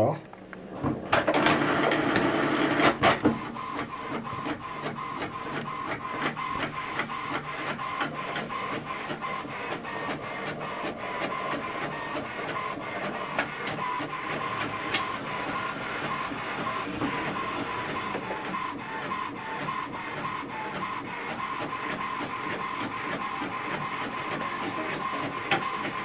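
HP Envy 6030 inkjet all-in-one printer making a colour copy. A louder stretch of mechanism noise with a few sharp clicks lasts about two seconds near the start. After that the printer runs steadily with rapid, regular ticking and a faint steady whine, and the copied page comes out near the end.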